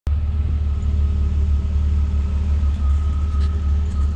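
Jeep Cherokee XJ engine idling with the snow plow mounted: a steady low rumble.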